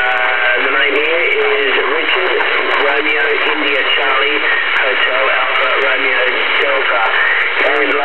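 A distant operator's voice received on a Uniden Washington CB base station in single sideband, talking through the set's speaker with thin, band-limited audio over steady static; the words are hard to make out.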